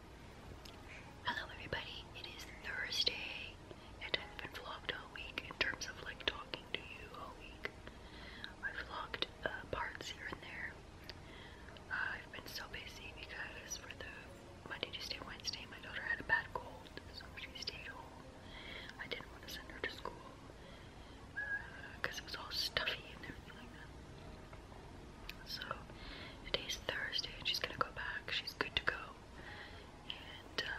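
A woman whispering, in short phrases with pauses between them.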